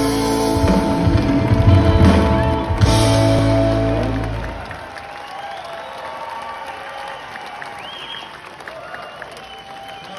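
Live rock band finishing a song with a loud final held chord over bass and drums, which cuts off about four and a half seconds in. The crowd then cheers and applauds.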